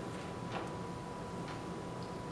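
A pause in speech: quiet room tone with a faint steady high whine and a few faint, irregular clicks.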